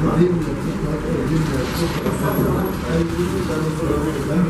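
Indistinct chatter of several people, with a steady low rumble underneath.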